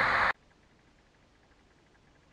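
A voice with hiss behind it stops abruptly just after the start, followed by near silence.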